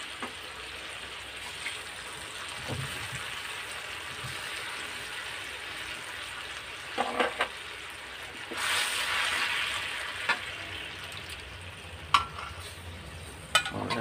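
Canned tuna frying in hot oil with butter and onions in a metal wok: a steady sizzle that swells louder for a second or so just past halfway. A few sharp metal clinks against the wok as the tuna is tipped from the can and stirred.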